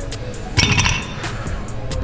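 A single sharp metallic clink with a short ring about half a second in, from chrome dumbbells knocking together, over background music with a steady beat.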